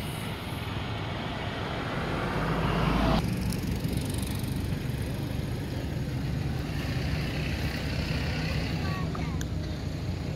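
Outdoor traffic noise: a passing vehicle swells and cuts off abruptly about three seconds in, over a steady low rumble. A few short, faint squeaks come near the end.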